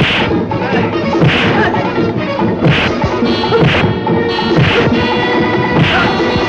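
Dubbed punch sound effects from a film fistfight: six sharp whacks, about one a second, over the background music score.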